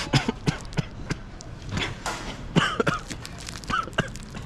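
Short, scattered bursts of coughing and laughter from two people, the fine matcha powder dusting their ice cream catching at the back of the throat.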